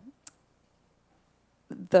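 A pause in a woman's lecture speech: her voice trails off, a single short click comes about a quarter second in, then near silence until she starts speaking again near the end.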